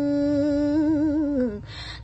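A woman's voice chanting Khmer smot, holding one long note with a wavering vibrato that slides down and stops about a second and a half in, followed by a quick breath.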